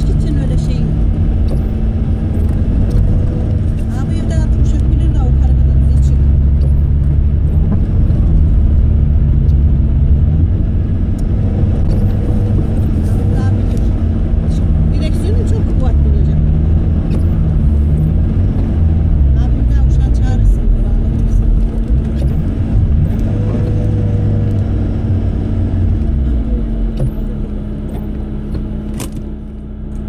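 Car engine running while driving, heard from inside the cabin, its low note rising and falling with the throttle over a steady hum. Near the end it quietens as the car slows to a stop.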